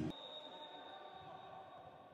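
A loud sound cuts off abruptly at the start, leaving a faint steady high-pitched tone over quiet background noise, all slowly fading away.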